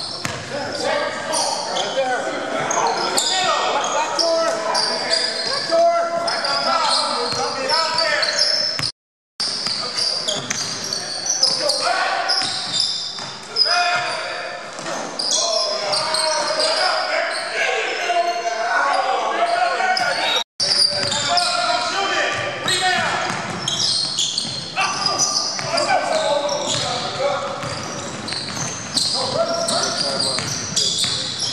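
A basketball game in a large gym: the ball bouncing on the hardwood court and players calling out, echoing in the hall. The sound cuts out for a moment twice.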